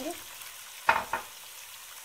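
Potatoes and vegetables frying in hot oil in a cooking pot, with a steady sizzling hiss. Two sharp knocks come about a second in.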